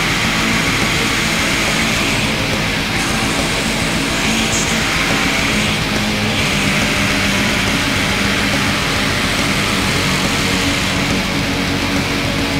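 Black metal recording: distorted electric guitars and drums in a dense, unbroken wall of sound at a steady loud level.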